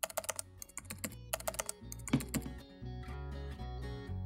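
Quick keyboard typing clicks for about the first two and a half seconds, laid over background music with a steady bass line.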